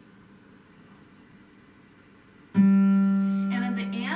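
One loud forte note struck on an upright piano about two and a half seconds in, after near quiet, and left ringing with a slow decay. The note is played with the arm-weight approach, the elbow dropping only after the fingertips touch the keys, to give a full forte that does not sound harsh.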